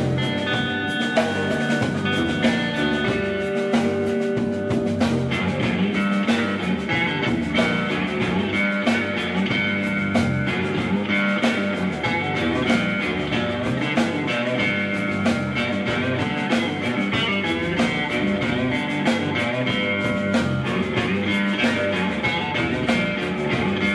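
Live rock band playing an instrumental passage on electric guitar, electric bass and drum kit, with steady drum hits under sustained guitar notes.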